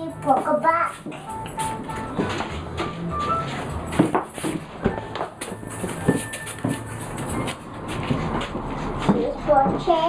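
A young child's voice in the first second and again near the end, with music in the background. A few sharp knocks fall in between.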